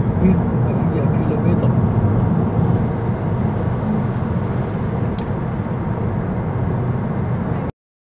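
Steady low rumble of road and engine noise heard inside a moving car's cabin. It cuts off suddenly near the end.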